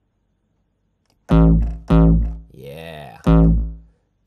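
Distorted hardcore kick drum from the Sonic Charge Microtonic drum synth (triangle oscillator at C1, noise off, heavy distortion) played three times: two hits about half a second apart, then a third about a second and a half later. Each hit is a loud, deep boom with a buzzing distorted tone that holds one pitch; the kick still lacks attack, with no pitch modulation on the oscillator yet.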